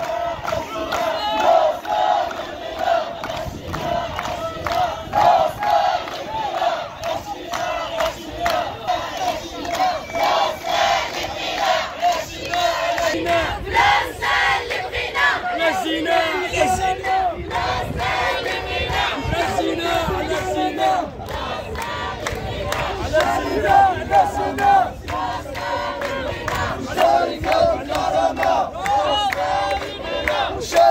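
A large crowd of protesting workers, men and women, chanting slogans together in a steady, repeating rhythm.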